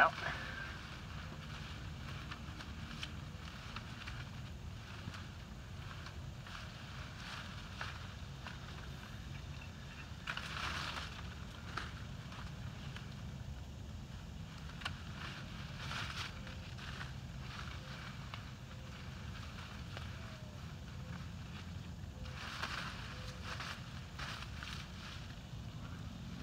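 Blackberry canes and leaves rustling as they are cut with hand pruners and pulled out of the bush, with louder bursts of rustling about 10, 16 and 22 seconds in, over a steady low rumble.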